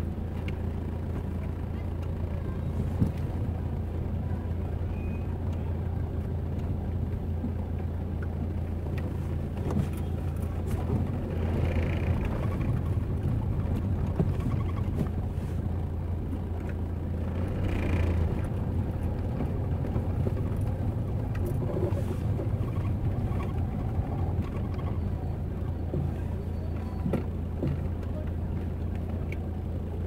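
Busy city street ambience: car traffic and the scattered voices of passers-by over a steady low rumble.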